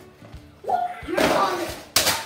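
Cardboard toy box being torn open by hand, a loud ripping over about a second, ending in one sharp snap. A child exclaims "whoa" over it.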